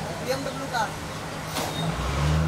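A motor vehicle's engine idling with a steady low hum, under brief snatches of talk.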